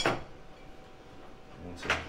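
A fork knocking against a plate twice, once at the start and again just before the end, each a short sharp clink, with quiet room noise between.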